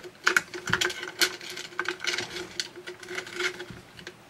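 Steel lighting safety cable and its carabiner clicking, rattling and scraping against the metal bracket of a retractable cord reel as the cable is threaded through, in irregular small clicks. A faint steady hum runs underneath.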